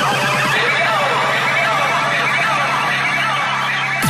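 Electronic dance-music intro build: a sustained low synth drone under warbling synth lines that sweep up and down like a siren, with no drums.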